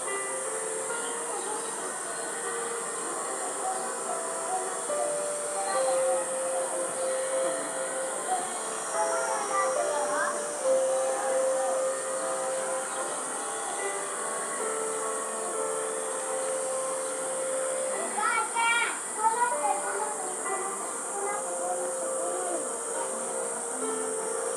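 Background of distant voices and music with held, stepping notes, over a steady high hiss; short chirpy glides come through about ten seconds in and again near nineteen seconds.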